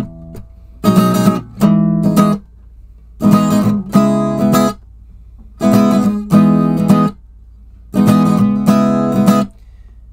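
Steel-string acoustic guitar strummed in four short groups of two chord strums each, with pauses of about a second between groups. The chords move from B7sus4 to C#m7.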